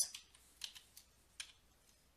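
Three faint computer keyboard clicks spread over about a second.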